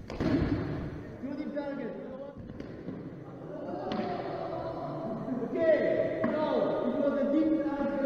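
Thuds and knocks of a sword-sparring bout on a wooden hall floor: stamping footwork, with a sharp knock at the very start and further knocks at about two and a half and four seconds in. Voices call out over it.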